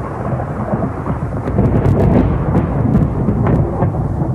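Thunderstorm: a continuous loud rumble of thunder with rain, with scattered crackles through it.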